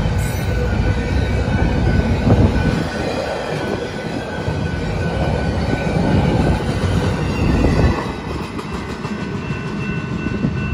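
Empty intermodal cars of a passing BNSF freight train rolling by on the main line: a steady rumble and wheel clatter on the rails, with a thin, steady wheel squeal over it. The rumble eases somewhat about eight seconds in.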